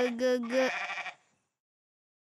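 A goat bleating: one long wavering bleat that cuts off about two-thirds of a second in.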